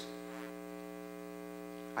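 Faint, steady electrical mains hum: a low buzz with a stack of even overtones, unchanging throughout.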